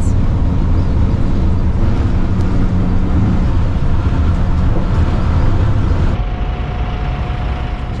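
Engine and road noise inside a converted school bus cruising on a freeway, a loud, steady low rumble. About six seconds in, the noise drops and a faint steady tone comes in.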